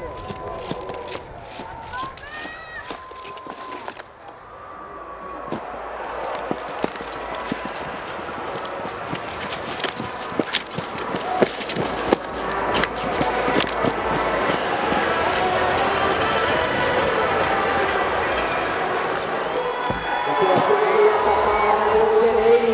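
A crowd of spectators cheering and shouting, swelling steadily louder over the first half and then staying loud. Scattered sharp knocks and clicks cut through it.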